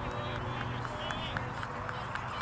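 Outdoor ambience on an open field: faint voices of players over a steady low hum, with a string of short high ticks, about five a second.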